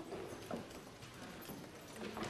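Footsteps on a hard floor, heard as a few sharp, irregular knocks.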